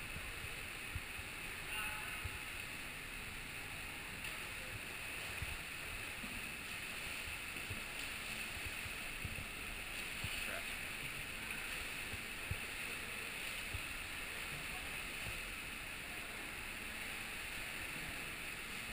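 Indoor pool hall ambience: a steady wash of water noise from swimmers splashing and churning the water, with a few faint knocks.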